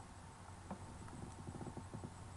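Faint handling noise from a hard mask and fabric moved about close to the microphone: a sharp click, then a quick run of soft knocks and rubbing in the second half. A steady low electrical hum runs underneath.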